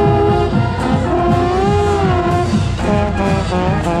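College marching band playing, with trombone close at hand and drums underneath. A held brass note bends up and back down in pitch in the middle.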